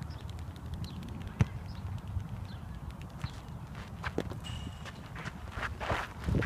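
A baseball smacking into a leather glove once, sharply, about a second and a half in, then a few lighter knocks and footsteps on a dirt infield near the end, over a steady low rumble.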